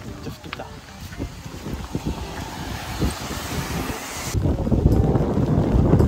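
Wind and rain: an even hiss of rain for the first few seconds, then, about four seconds in, louder gusty wind rumbling on the microphone.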